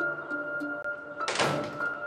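Soft background score of sustained tones, with a single door thud about one and a half seconds in.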